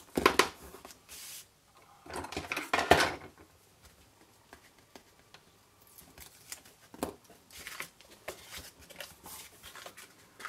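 Adhesive tape being pulled and torn off a roll, with a couple of loud rasping bursts in the first three seconds, then light taps and rustles of cardstock being folded and pressed into a box.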